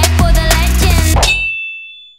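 Intro logo sting: music with a steady beat and bass that cuts off about two-thirds of the way in, leaving a high ringing tone that fades away.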